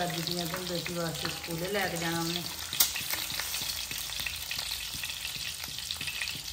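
An egg frying in oil on a black tawa, sizzling steadily while a steel spoon scrapes and bastes around it, with one sharp tap about three seconds in.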